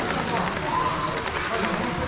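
Indistinct voices of people talking in the background, over the steady running noise of an HO-scale model container freight train passing along the track.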